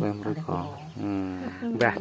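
A person's voice in conversation: low-pitched, drawn-out speech sounds, with one long held vowel about halfway through.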